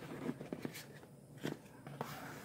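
Faint handling sounds of cardboard trading cards: a few light clicks and rustles as the cards are shuffled in the hand and reached for on the table.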